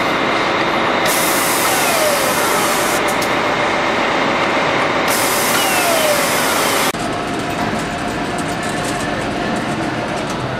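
Multi-spindle power nut runner working on a tractor wheel hub amid loud assembly-plant noise. Stretches of hissing come and go, with short whines that fall in pitch as it runs. About seven seconds in, the sound changes abruptly to a steadier factory din with a faint steady hum.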